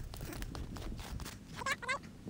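Low wind rumble on an action camera's microphone, with light clicks and crunches of ski-touring steps and poles on snow. Near the end comes a brief high pitched call.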